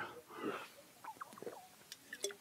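Faint short squeaks and small clicks of a congregation sitting back down in their chairs, most of them around the middle.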